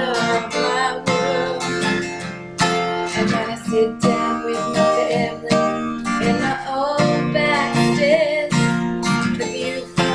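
Acoustic guitar strummed in a steady rhythm, playing a country song, with a woman's voice singing along at times.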